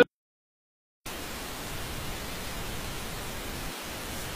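Music breaks off sharply, then about a second of silence, then a steady, even hiss of static noise.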